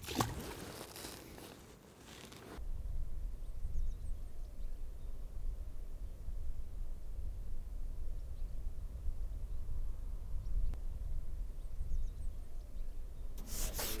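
Steady low wind rumble on the microphone, setting in about two and a half seconds in, with a few faint, short high chirps over it.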